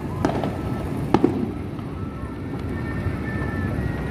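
Fireworks going off: two sharp bangs about a second apart, the second one doubled, over a steady background din.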